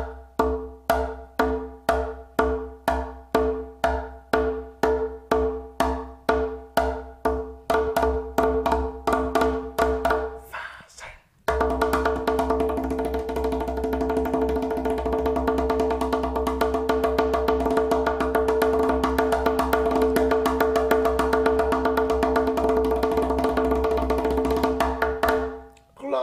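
Conga drum struck with the fingertips at the edge of the head, the cloche stroke of Haitian rhythms: even strokes about two a second for roughly ten seconds, a short pause, then a fast continuous run of strokes that stops just before the end.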